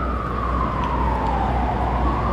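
Emergency vehicle siren wailing: one long tone that slides slowly down in pitch, then jumps back up and starts climbing again near the end, over a steady low rumble.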